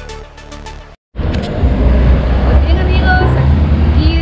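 Electronic background music with a steady beat, cut off about a second in; after a brief gap of silence, loud street noise with a deep rumble and people's voices.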